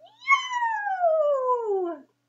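A woman's voice calling out a long, drawn-out 'Yow!' in one breath: the pitch jumps up at the start, then slides steadily down for nearly two seconds.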